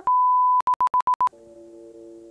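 A loud, pure electronic beep held for about half a second, then broken into about six quick short beeps, followed by a softer held chord of lower notes.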